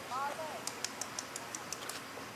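A brief call that rises and falls, just after the start, followed by a quick run of about eight sharp, high-pitched ticks or chirps.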